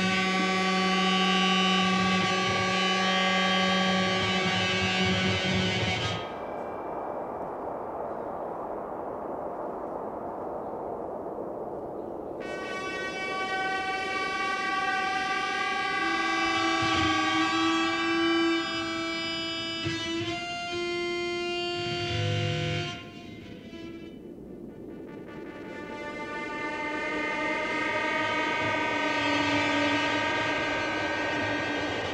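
Live band music with an electric violin bowing long, sustained notes over held chords. About six seconds in, the notes give way to a hazy wash for several seconds, then long held tones return.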